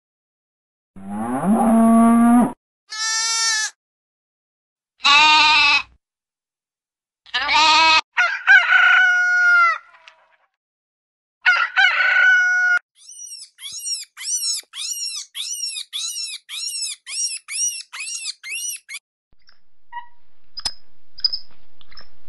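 Farm animal calls one after another: a cow mooing, then a few higher bleating and crowing calls, including a rooster. After that comes a quick series of about a dozen short high calls, roughly two a second, and near the end a rising rush of noise.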